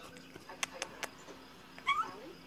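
A cat gives one short rising meow near the end, after three sharp clicks, over faint TV dialogue.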